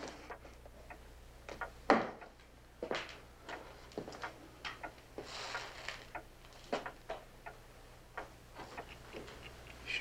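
Footsteps on a wooden floor: a string of irregularly spaced knocks, the loudest about two and three seconds in, over a faint steady low hum.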